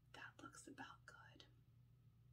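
A woman whispering a few words under her breath for about a second and a half, faint, over a steady low hum.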